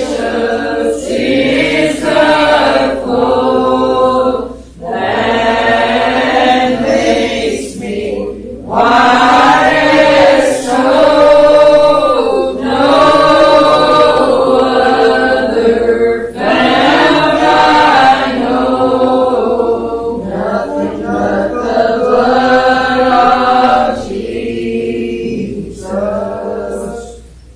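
Congregation singing a hymn together, voices held on long notes in phrases of a few seconds, each broken by a short pause for breath.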